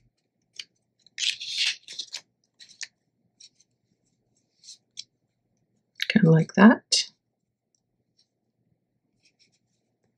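Cardstock pieces being handled and slid over a paper album cover: short papery rustles and light ticks. A brief murmured vocal sound comes about six seconds in.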